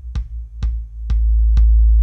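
Electronic kick drum loop, soloed, beating about twice a second through a very narrow, heavily boosted EQ band that is being swept down in frequency. About a second in, the band lands on the kick's resonant frequency, about 55 Hz (the note A), and a loud, steady low boom rings out under the beats.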